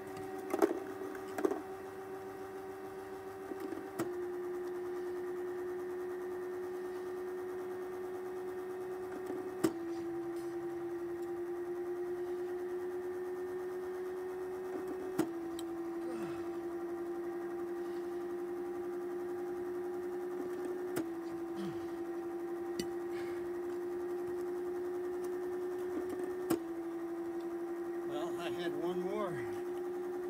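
Small electric pitching machine humming steadily, with a sharp click about every five and a half seconds as it throws a plastic ball. At each throw the hum drops slightly in pitch, then slowly climbs back.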